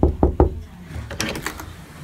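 Knuckles knocking on a panelled interior door: three quick knocks at the start, then fainter clicks about a second later.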